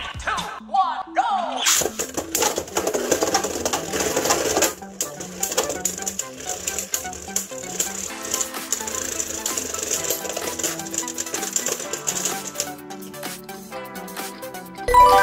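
Two Beyblade Burst spinning tops are launched into a clear plastic stadium about two seconds in. They spin with a steady high whir and clatter against each other in rapid clicks until the spinning dies away near the end. Background music plays throughout.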